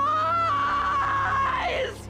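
A woman's long scream, held at a high pitch for nearly two seconds and falling away at the end.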